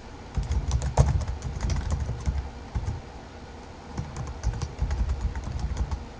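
Typing on a computer keyboard: a run of quick keystrokes, a short pause, then a second run starting about four seconds in.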